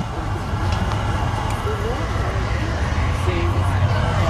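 Steady low drone of the running glassblowing furnace equipment, with faint voices in the background.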